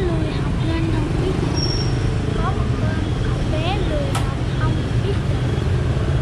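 Steady rumble of street traffic, with a sharp click about four seconds in.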